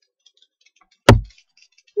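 Round tarot cards being handled, with faint light clicks, and one sharp thump about a second in.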